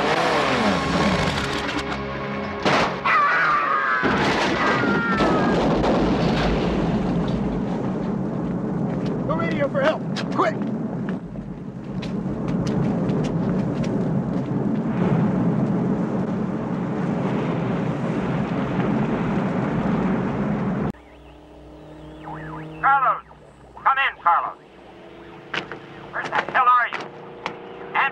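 Action-film soundtrack: music mixed with vehicle and crash effects and voices. A dense steady rumble runs through most of it, then cuts off abruptly about three-quarters of the way in to a quieter passage with voices.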